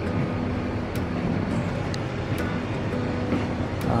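Steady low hum and rumble of shop room noise, with faint voices in the background and a few light clicks.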